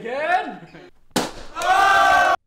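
A thrown dart pops a balloon with a single sharp bang about a second in, followed by loud yelling from the group.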